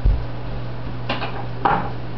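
Kitchen containers and utensils being handled on a counter: a low thump, then two short clinks about a second apart, over a steady low hum.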